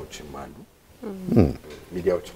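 Speech: a person talking, with a short pause and then one drawn-out voice sound that falls steeply in pitch about a second and a half in.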